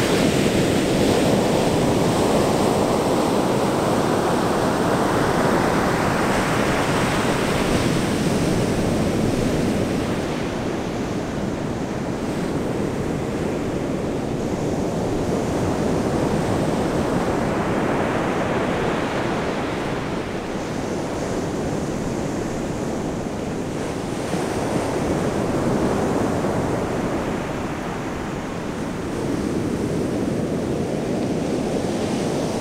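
Ocean surf breaking on a sandy beach, a steady rushing wash that swells and eases in slow surges as waves come in.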